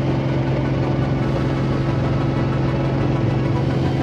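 Single-engine piston Beechcraft Bonanza's engine and propeller droning steadily in flight, heard inside the cockpit as an even, unchanging hum.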